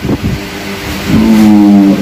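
A man's voice over a microphone: a short pause, then, about halfway in, a long drawn-out vowel held on one steady pitch.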